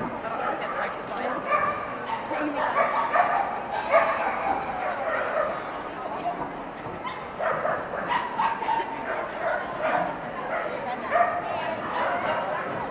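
A dog barking and yipping again and again, with the sharpest barks at the very start and about four seconds in, over the babble of a crowded hall.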